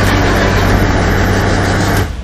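Fendt Vario 820 tractor's six-cylinder diesel engine running steadily with a deep, even drone.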